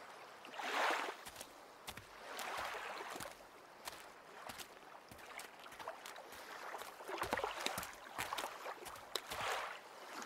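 Sea water washing against the rocks at the mouth of a sea cave, coming in swells about a second in, a few seconds in and near the end, with scattered clicks and knocks between them.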